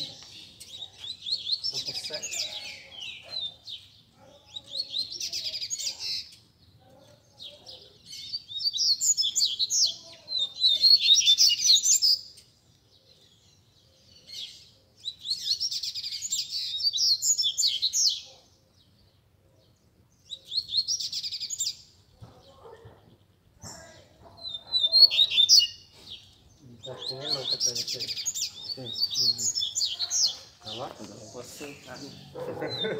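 Caged double-collared seedeaters (coleiros) singing: about seven phrases of rapid, high twittering song, each lasting a couple of seconds, with short pauses between them.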